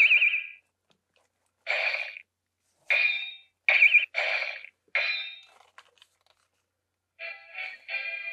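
Electronic sound effects from the small built-in speaker of a TAMASHII Lab Laser Blade toy sword: six short swish-and-ring bursts, a few with a warbling tone. About a second before the end, a tinny electronic music phrase starts playing from the same speaker.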